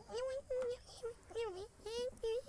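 A man's string of short, high-pitched squeaky vocal noises, each rising and falling in pitch, a few a second.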